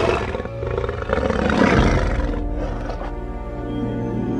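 A dragon's growling roar, a film creature sound effect, swelling about a second in and easing off, over orchestral film music.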